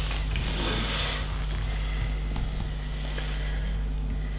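A page of a paper instruction booklet being turned and smoothed down, a soft rustle in the first second. Under it runs a steady low electrical hum, with a few faint clicks of loose LEGO pieces.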